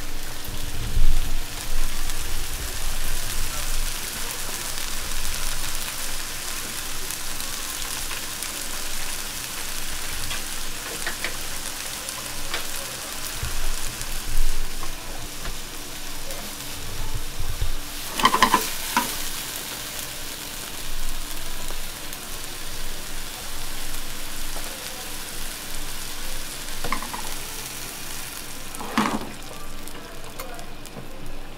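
Oysters and vegetables sizzling steadily in a frying pan over a gas burner, with a couple of brief clinks, one about two-thirds of the way in and one near the end.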